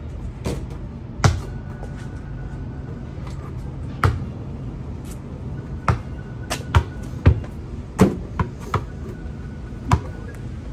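Basketball bouncing on asphalt: a few single thumps in the first half, then a quicker run of dribbles between about six and nine seconds in.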